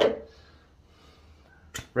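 Quiet small-room tone after a short spoken "uh", with one brief click near the end as a plastic tub is picked up.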